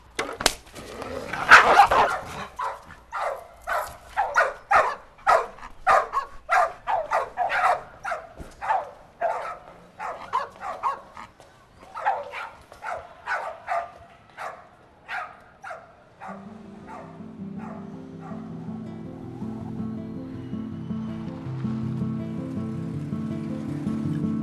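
A dog barking over and over, about two barks a second, loudest at the start and gradually fading. About two-thirds of the way through, background music with sustained low notes comes in and grows.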